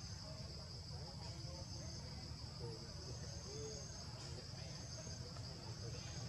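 A steady, high-pitched insect chorus drones without a break, over a low background rumble, with a few faint short calls in the middle range.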